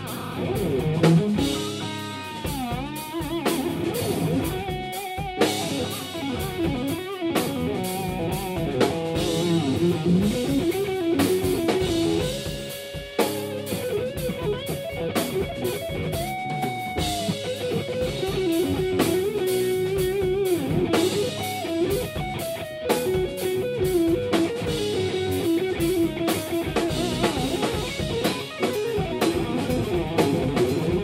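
Instrumental rock played live by a band: a lead electric guitar, an Ibanez S series Prestige through a Cornford MK50 amp, plays melodic lines with bent, gliding notes over a drum kit.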